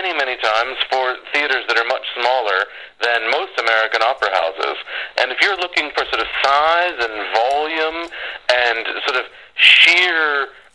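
Speech only: a person talking steadily, the voice thin and narrow like speech over a phone line.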